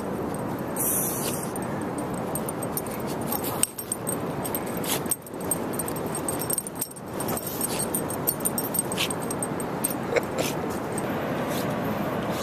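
A dog digging in beach sand, its paws scraping with quick, scratchy strokes over a steady rushing background.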